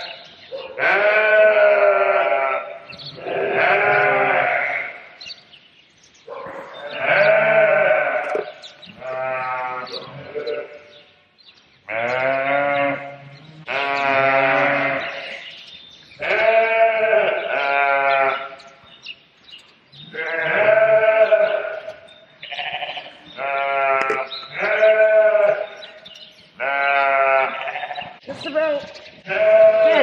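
Sheep bleating over and over, loud and close: about fifteen calls, each a second or so long, with short breaks between.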